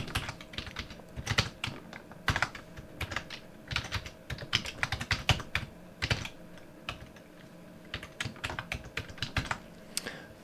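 Typing on a computer keyboard: irregular runs of key clicks, with a pause of about a second and a half a little after the middle.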